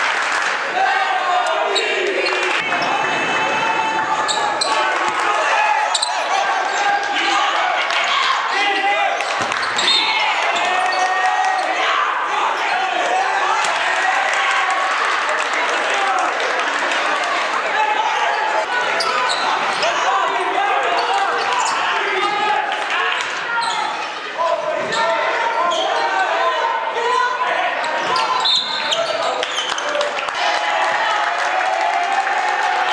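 Sound of a basketball game in a gymnasium: many voices from players and spectators shouting and calling out throughout, with the ball bouncing on the court and short sharp knocks in between.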